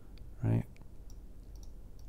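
Several faint, separate computer mouse clicks as automation points are clicked and dragged in a music program.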